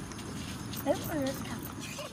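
A person's voice, two short sounds that rise and fall in pitch about a second in, over a steady hiss with faint clicks.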